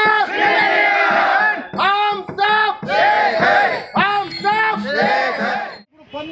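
A crowd of marchers chanting loudly in unison, the same short phrases shouted over and over, cutting off abruptly just before the end.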